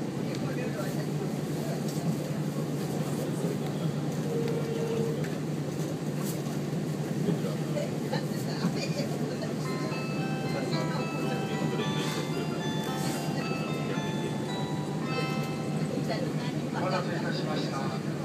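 Steady running drone of a 2000-series diesel tilting train heard from inside the car. Around the middle an electronic chime melody of short clear notes plays, and a voice on the train's address system begins near the end.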